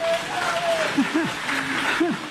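Audience applauding, with a few voices calling out over the clapping.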